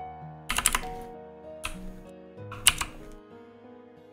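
Computer keyboard keys clacking in short bursts: a quick cluster about half a second in, a single press in the middle, and another cluster near the three-second mark, which is the loudest. Soft instrumental background music plays under them.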